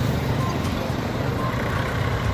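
Road traffic going by close: a motorcycle and a car pass, and their engines and tyres make a steady low rumble.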